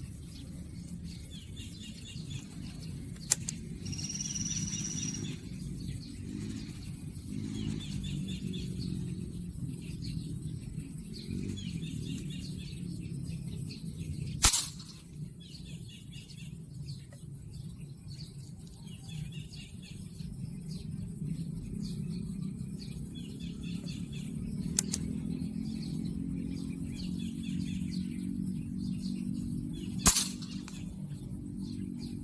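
Alpha PCP air rifle in .177 firing, a sharp crack about halfway through and another right at the end, with a couple of lighter clicks between; birds chirp over a steady low background noise.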